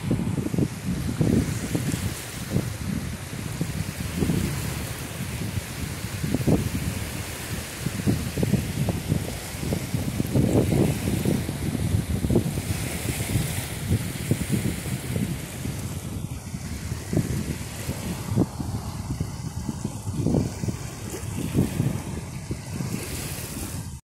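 Wind buffeting the microphone: a continuous low rumble with irregular gusts.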